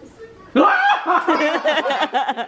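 A young child's high voice, excited chatter mixed with laughter, breaking in suddenly about half a second in.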